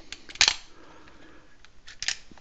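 Slide of a Kahr K40 .40 S&W pistol being worked by hand while the trigger is held back, the slide's travel cocking the striker: a sharp metallic clack about half a second in, with a couple of lighter clicks before it and another click near the end.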